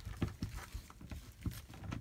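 Ratchet wrench and 14 mm deep socket loosening a valve piston assembly from a brass refrigerant gauge manifold: a handful of light, irregular clicks and taps.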